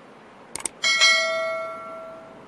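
Two quick mouse-click sound effects about half a second in, then a bright bell ding that rings on and slowly fades: the notification-bell sound of a subscribe-button animation.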